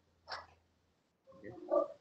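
A short breath from the speaker, then dead silence, then a faint drawn-out vocal hesitation just before talking resumes.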